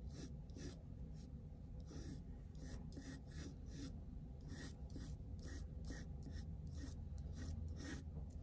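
Colored pencil sketching on paper: short scratchy strokes repeating irregularly, a few a second, over the steady low hum of an air conditioner.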